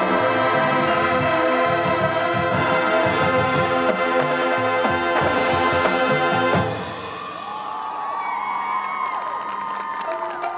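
High school marching band playing a loud, full sustained chord with drum hits, which cuts off about two-thirds of the way through. After the cut-off, a crowd cheers over quieter held tones from the front ensemble.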